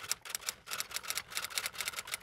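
A rapid, irregular run of light clicks, about ten a second, used as a sound effect for an animated intro title card.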